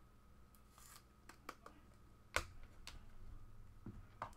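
Faint handling of trading-card packaging: a few light clicks and rustles, the sharpest click about two and a third seconds in.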